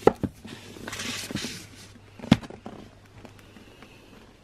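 Handling noise as a hardback book is pulled from a bookshelf: a few sharp knocks at the start, a rustling slide, then one loud knock a little over two seconds in.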